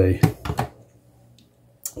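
A man speaking briefly, then a pause and a single sharp click near the end as the Nespresso machine's brew button is pressed.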